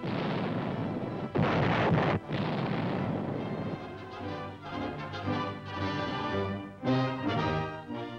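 Battleship main guns firing: the rumble of one salvo fading, then a second heavy blast about a second and a half in. From about three seconds in, music takes over.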